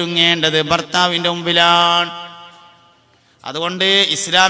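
A man's voice intoning in a chanting style, holding long steady notes. It breaks off about two seconds in and starts again near the end.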